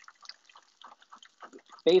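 Faint, irregular ticking and crackling from cod frying in hot oil, mixed with soft taps of a chef's knife chopping basil on a wooden cutting board.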